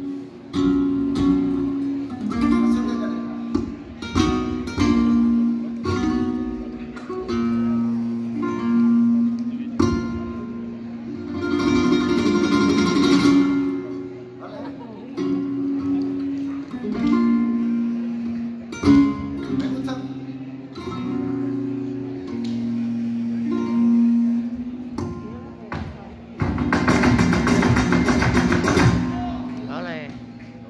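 Live flamenco: acoustic guitar with a singer's long held notes, punctuated throughout by sharp percussive strikes. There are two louder, denser stretches, one about twelve seconds in and one near the end.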